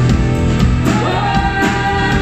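Live band playing a pop-rock song with a woman singing lead, over a steady drum beat with piano, acoustic guitar and fiddle.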